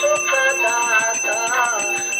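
Devotional aarti hymn being sung to a melody, with rhythmic jingling percussion and ringing bells keeping time.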